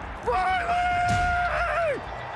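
A football player's high-pitched yell on the field microphone: a short rising call, then one long note held for over a second before it drops away.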